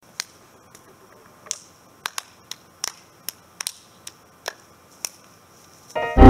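Hands slapping sharply, about a dozen quick cracks at uneven spacing over a faint background hiss.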